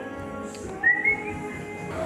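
A short rising whistle in two quick notes about a second in, over steady background music.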